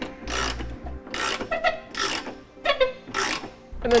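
Socket ratchet wrench on a long extension tightening the hitch's flange nuts. There are about five short bursts of rapid pawl clicking, one for each back-swing of the handle.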